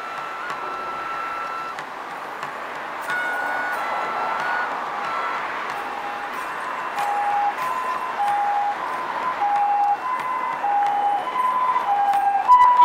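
Japanese bamboo kagura flute playing a slow melody of long held notes, in the second half going back and forth between two notes, over a steady background hiss.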